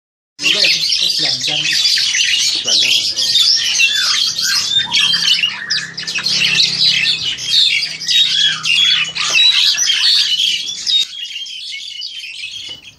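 Black-collared starling singing a fast, unbroken stream of varied chattering and whistled notes, dying away about eleven seconds in.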